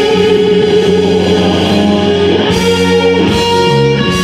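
Live rock band playing loud and steady: electric guitar over drums, bass and keyboards.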